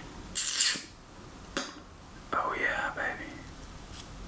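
A man's quiet whispered vocal sounds: a hissing breath about half a second in, a single click a second later, then a short mumbled word.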